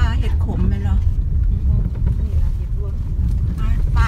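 Low, steady rumble of a car driving slowly along a rough dirt track, heard from inside the cabin.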